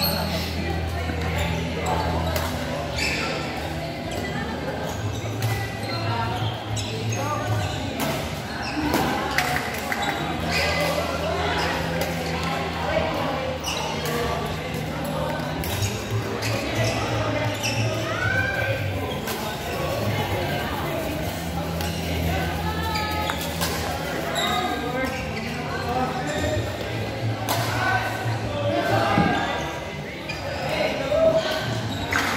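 Indoor badminton hall ambience: background voices, with scattered sharp clicks and knocks of racket hits and footfalls on the court. Under it runs a low steady hum that changes pitch every few seconds.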